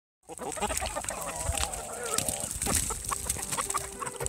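Chickens clucking, starting a moment in after dead silence, with one drawn-out wavering call around the middle.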